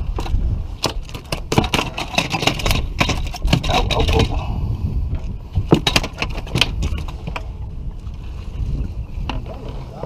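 A just-landed sheepshead flopping on a boat deck, its body slapping the deck in a rapid run of knocks for about the first four seconds, then only a few scattered knocks. A steady low rumble runs underneath.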